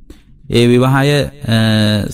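A Buddhist monk's male voice intoning in the drawn-out, chant-like cadence of a sermon. After a short pause it holds two long sustained phrases.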